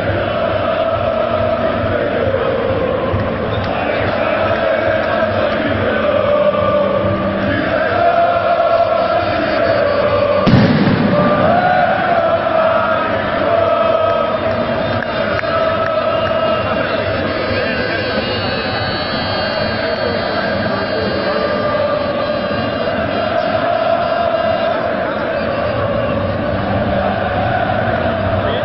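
Stadium crowd of football fans singing a sustained chant together, with one sharp bang about ten seconds in.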